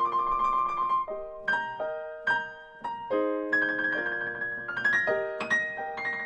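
Grand piano playing a light, pop-like passage: repeated chords under high, bright bird-like notes. The high notes are played too prominently on purpose, so the steady left-hand beat gets lost.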